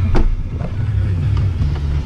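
Vehicle engine and road noise heard from inside a pickup truck's cabin: a steady low rumble, with one short knock just after the start.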